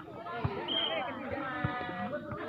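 Players' and onlookers' voices calling out during a volleyball rally, with two dull thumps of the volleyball being struck, about half a second and one and a half seconds in.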